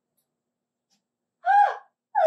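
A single short, high-pitched gasp from a puppeteer's character voice, falling in pitch, about a second and a half in after near silence.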